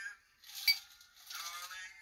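Metal cocktail shaker pouring a strained cocktail into small stemmed glasses, with one sharp clink of metal against glass about two-thirds of a second in.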